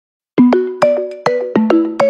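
Background music that starts a moment in: a melody of struck, bell-like notes, about four or five a second, each ringing and fading.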